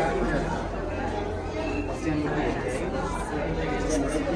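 Indistinct chatter of many overlapping voices from a crowd of aquarium visitors, over a steady low hum.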